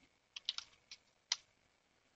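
Computer keyboard typing: about five quick, faint keystrokes, a short command typed and entered over about a second.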